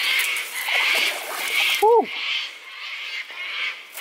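High-pitched animal calls pulsing steadily, about two a second.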